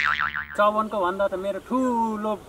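A comic 'boing' sound effect: a wobbling tone lasting about half a second at the start, followed by a man speaking.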